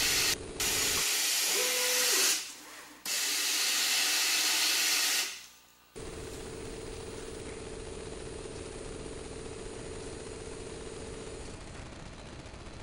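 Sand running from a rotary scalpel gravimetric feeder into a container: a loud, steady hiss of the flowing stream, dipping briefly twice and stopping about five and a half seconds in. Then a quieter steady hiss with a faint hum as the feeder runs in slow mode to top up to the target fill weight.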